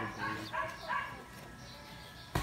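A dog barking faintly in the background: a few short yelps in the first second, then only low background sound.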